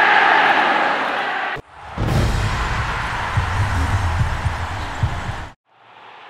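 Intro sting: a roar like a stadium crowd, broken by a click about a second and a half in, then a second roar over a low pulsing beat that cuts off suddenly near the end.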